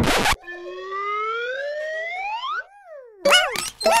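Cartoon sound effects for an animated hopping desk lamp. A long rising tone is followed by a short falling glide, then a quick clatter of knocks with squeaky chirps that swoop up and down in pitch.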